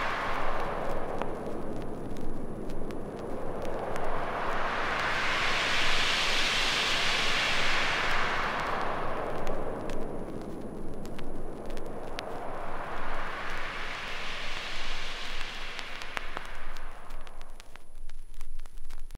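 Synthesizer white-noise sweep closing an acid hard trance track: a hiss that slowly swells up in pitch and falls back down, peaking about six seconds in and again around fifteen seconds, with faint scattered crackles.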